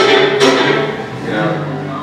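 Fiddle playing bowed notes that stop about half a second in, after which the sound drops to quieter held low notes and a faint voice.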